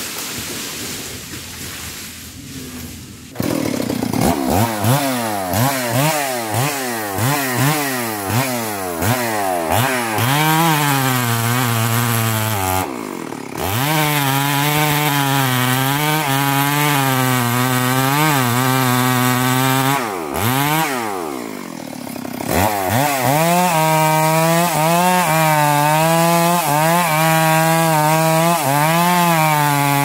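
Chainsaw starting about three seconds in, revved in a series of quick throttle blips, then held at high revs cutting into a tree trunk, its pitch wobbling under load. About two-thirds through, the revs drop and climb back before it bites in again.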